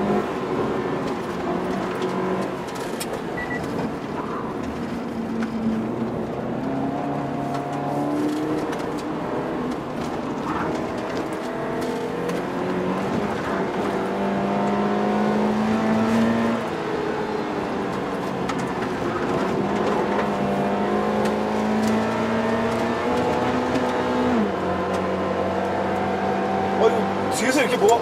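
Toyota GT86's flat-four engine heard from inside the cabin under track driving, its pitch climbing steadily and then dropping several times as the automatic gearbox shifts.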